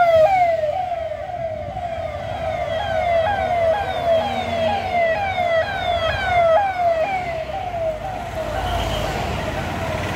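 Electronic siren on a motorcade escort vehicle, a repeating falling wail that snaps back up a little over twice a second, fading near the end as the convoy passes, over the engines and tyres of passing vehicles.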